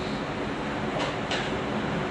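Steady room noise with a low rumble and hiss, and a couple of faint brief sounds about a second in.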